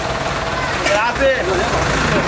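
Car engine running nearby: a steady low rumble that comes in about a second in, under people's overlapping voices.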